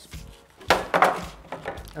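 Plastic packaging being handled, with a quick cluster of sharp crinkles a little under a second in and quieter rustling after.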